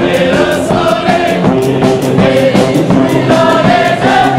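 A crowd singing along loudly with a banda, a festive brass band with sousaphones, trumpets and a drum kit with cymbals, over a steady beat.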